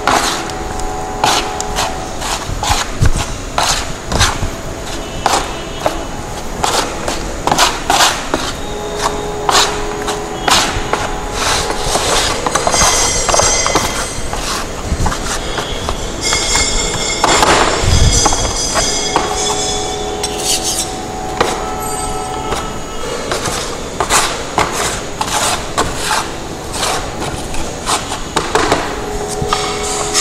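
Steel trowels scraping and clacking against each other and the tray while cement paste is mixed by hand, in quick, irregular strokes. This is the gauging of a fresh cement paste with added water for a standard-consistency test.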